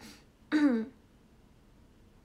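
A young woman makes one short voiced sound about half a second in, falling in pitch, close to the microphone.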